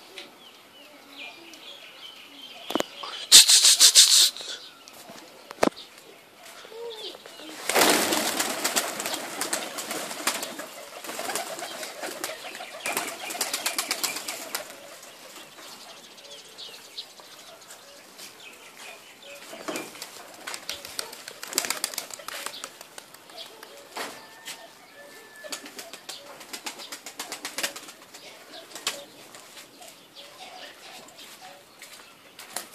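Pigeons' wings flapping in rapid bursts: a short loud burst about three seconds in, then a longer run of wingbeats from about eight seconds in that fades by about fifteen seconds, with fainter flutters later.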